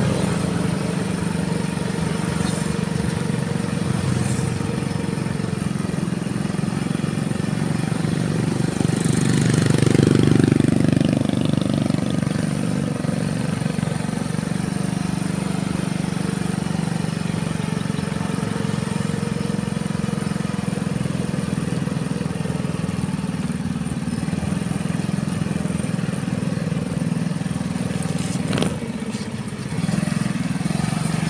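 Motorcycle engine running steadily at cruising speed while riding. About ten seconds in it swells louder and then falls in pitch.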